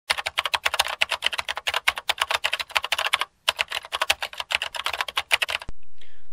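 Rapid keyboard typing, about eight keystroke clicks a second, with a short pause just past halfway; the clicking stops shortly before the end.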